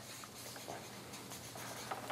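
Marker pen writing on a paper flipchart, faint.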